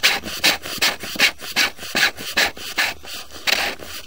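Threaded plastic sewer cleanout plug being screwed in by hand, its threads rasping in short repeated strokes, about two to three a second.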